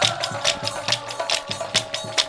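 Nagara naam accompaniment: small hand cymbals struck in a fast, even rhythm, about six strokes a second, over regular strokes of a large nagara drum, with a steady held note running underneath.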